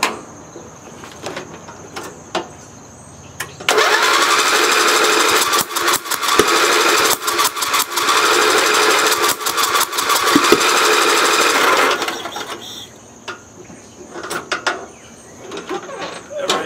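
Single-cylinder 11 HP Briggs & Stratton lawn tractor engine cranked by its starter for about eight seconds, spinning fast and evenly without catching. It turns over too freely for an 11 HP engine, the sign of lost compression that the owner takes to point at the intake valve.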